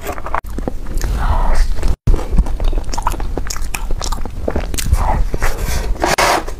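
Close-miked biting and chewing of soft chocolate cake: moist, irregular mouth sounds and small clicks, with a momentary gap about two seconds in.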